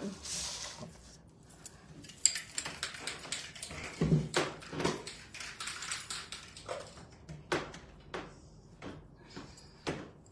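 A large sheet of card being handled and set down on a paper-covered tabletop: rustling with a run of light taps and knocks.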